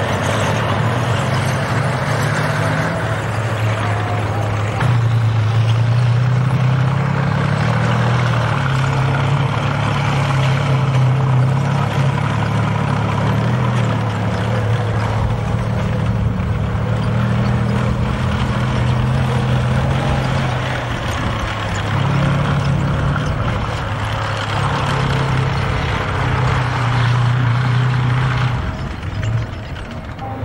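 Tank diesel engine running loud and low, its pitch stepping up and down as the tank drives and its revs change, dipping briefly near the end.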